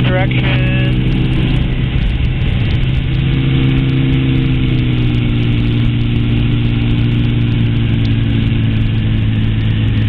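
Weight-shift control trike's engine and pusher propeller running steadily in flight, under a constant rush of wind. The engine note shifts about two seconds in, then holds steady.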